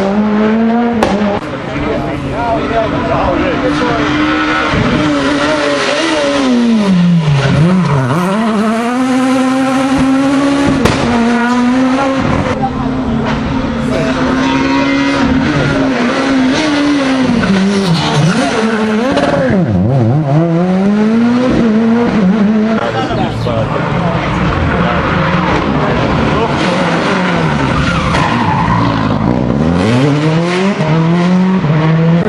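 Rally cars, among them a Renault Clio, taking a tight tarmac corner one after another. Their engines drop on the lift and gearshifts, then rev hard again as each accelerates out, with a couple of sharp cracks along the way.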